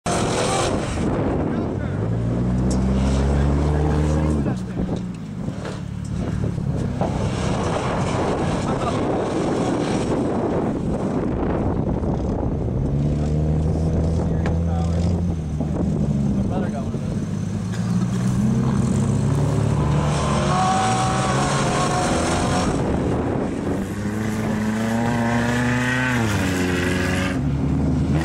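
Ford Crown Victoria Police Interceptor's V8 engine revving hard, its pitch climbing and falling in several long sweeps as the car is driven fast in circles on dirt.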